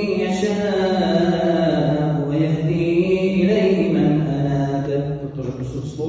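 A man's voice reciting a Quran verse from Surah Ar-Ra'd in Arabic, in the melodic, drawn-out style of tajweed recitation with long held notes. The phrase trails off near the end.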